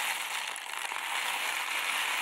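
Dry elbow macaroni pouring out of a cardboard box into a Jetboil cooking cup, a steady dense rattle of small pieces.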